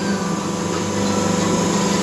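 Semi-automatic hydraulic paper plate machine running: a steady motor hum with a thin high whine, unchanging.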